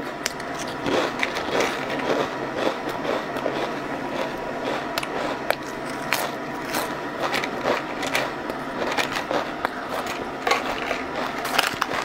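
Thin, crisp potato chips crunching as they are bitten and chewed close to the microphone: a quick, irregular run of sharp crackling crunches.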